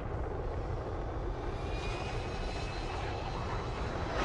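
Fighter jets' engines in flight: a steady rush with a low rumble, and a thin high whine joins about halfway through.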